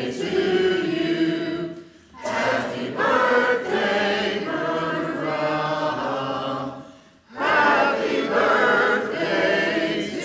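Many voices singing a hymn together in church, in long sung phrases broken by short pauses about two and seven seconds in.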